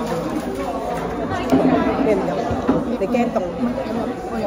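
Indistinct chatter of several voices talking in a café.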